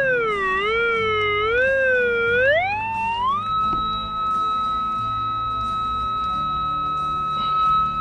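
Golden Mask Deep Hunter Mobile pulse-induction metal detector's audio tone, wavering up and down in pitch with each sweep of the coil. About three seconds in it climbs to a higher tone and holds it while the coil sits over the hole. This is a strong target signal from a 4.5 cm silver thaler copy buried about 60 cm deep.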